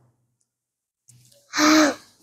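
Near silence for about a second, then one short breathy vocal sound from a person, about a second and a half in.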